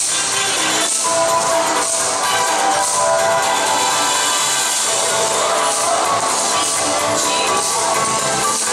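Yosakoi dance music with a steady beat, accompanying a team's group dance.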